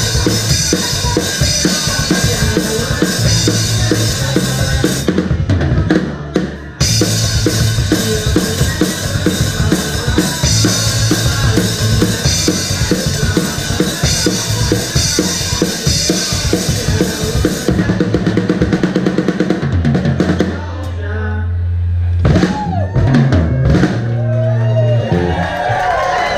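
Live rock band heard from right beside the drum kit: snare and bass drum beat with cymbals over bass and electric guitar, the drums loudest. The cymbals drop out briefly about five seconds in. Near the end they stop, a low bass note is held, and a final hit closes the song.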